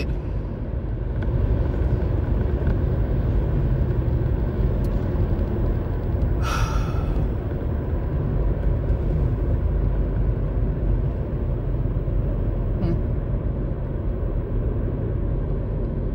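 Steady low road and engine rumble heard inside the cabin of a moving car, with a brief hiss about six and a half seconds in.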